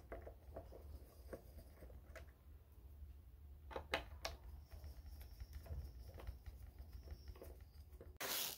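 Faint clicks and scrapes of a small screwdriver turning out an electric guitar's pickguard screws, with a couple of sharper ticks about four seconds in.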